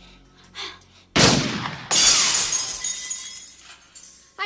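A sudden loud crash about a second in, then glass shattering, with shards tinkling as they fall and fading over about two seconds.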